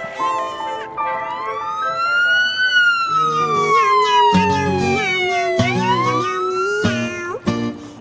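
Emergency siren wailing: one tone rising, then falling slowly, then rising again. It plays over background music, with a steady note and a beat coming in about halfway through.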